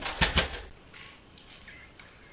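Two sharp thumps about a fifth of a second apart, followed by quieter rustling.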